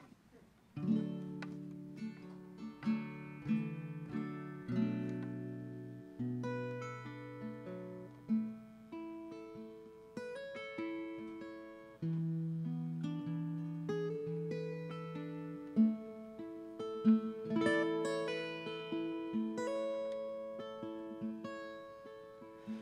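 Solo acoustic guitar playing a song's instrumental intro, picked notes and chords ringing out and fading one after another. It begins about a second in, after a brief hush.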